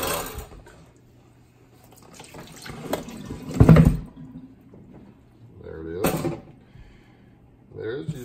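Brown water poured from a plastic tub into a stainless steel sink, building to a loud splash about halfway through. About six seconds in comes a second, shorter splash as the cured beeswax block drops out of the upturned tub into the sink.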